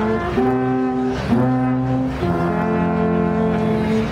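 Three wooden alphorns played together in harmony: a slow phrase of long held notes, closing on a sustained chord through the second half that stops at the very end.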